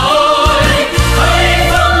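Music: a Vietnamese military march song sung in Vietnamese by a chorus over instrumental accompaniment.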